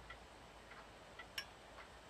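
Near silence: room tone with faint, even ticking about twice a second, and one sharper click about one and a half seconds in.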